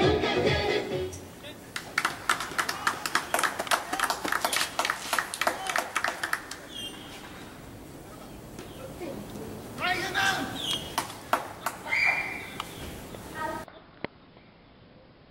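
Music fading out about a second in, then a quick run of sharp taps lasting several seconds, then people calling out in short shouts near the end.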